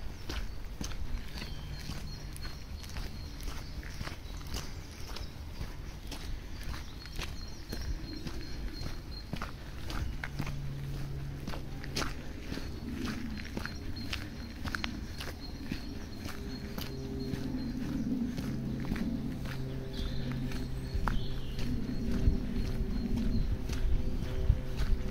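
Footsteps on a wet gravel and mud woodland track, a steady walking stride.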